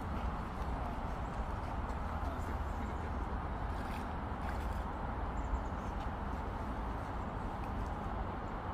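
Shallow creek water flowing over stones, a steady wash of noise with a low rumble under it, and a few faint ticks from someone wading around the middle.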